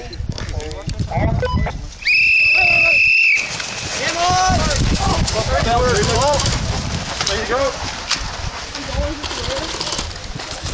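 A whistle blows one long, steady blast about two seconds in, lasting just over a second: the signal that starts the game. Right after it, many voices shout and whoop together, with scattered sharp clicks.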